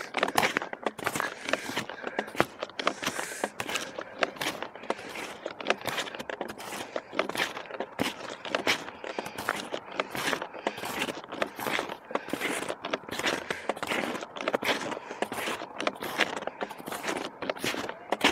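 Footsteps crunching in packed snow at a walking pace, a quick run of short crunches with small scrapes.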